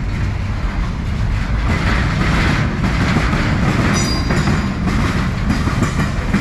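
CSX freight cars, centerbeam flatcars, rolling past over a railroad diamond: steady wheel rumble with rapid clacking as the wheels cross the rail joints, and a brief high wheel squeal about four seconds in.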